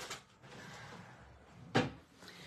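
Faint handling noise on a craft table, then a single sharp knock near the end, as an object is knocked or set down on the table.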